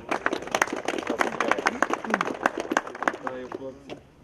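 Applause: many hands clapping in quick, irregular claps that die away near the end.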